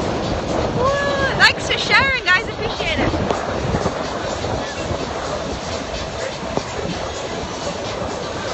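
Wind buffeting the microphone on a sailboat under way, a steady rushing noise. Brief voice sounds, like whoops or laughs, come between about one and three seconds in.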